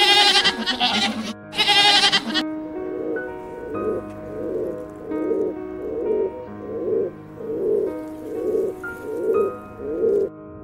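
A goat bleating twice, loudly, in the first two seconds, then feral pigeons cooing in a steady series of about ten coos, a little under one a second.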